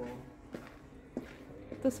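Quiet room tone with two brief soft clicks about half a second apart, between bits of speech at the start and near the end.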